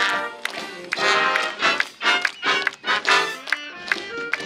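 High school marching band playing outdoors, with flutes, saxophones, clarinets and sousaphones holding layered sustained notes. Frequent sharp percussive hits, roughly two or three a second, cut through the music.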